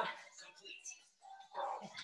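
A pet dog making a brief vocal sound about one and a half seconds in.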